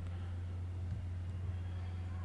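Steady low hum from the recording background, with a couple of faint clicks about a second in.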